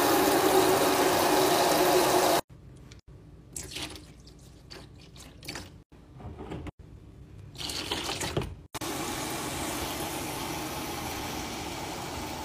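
Tap water running into a plastic spin-mop bucket, a steady rush with a faint filling tone, which stops abruptly about two and a half seconds in. Several seconds of quieter, scattered handling sounds follow, then the water runs into the bucket again from about nine seconds in, as the cleaner foams up.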